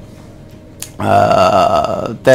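A man's voice holding a drawn-out 'aah' hesitation sound at a steady pitch for about a second, after a short pause with a faint click.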